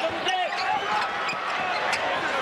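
A basketball being dribbled on a hardwood court, with several sharp bounces over steady arena crowd noise.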